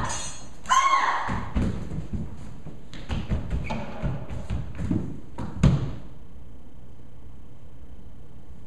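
A brief cry about a second in, then a run of footfalls and thumps on a stage floor during a staged struggle, ending in one heavy thud near six seconds in as a body drops to the floor. After that only quiet room tone.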